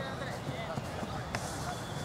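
Faint voices calling out in the open air over a steady background hum, with one sharp click a little past halfway.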